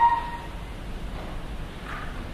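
The last sung note of a woman's shigin chant stops, and its echo in the hall fades within about half a second. A low, steady room rumble follows.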